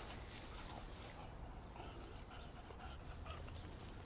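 English bulldog rooting through leafy ground cover: faint, short dog sounds over light rustling of the leaves.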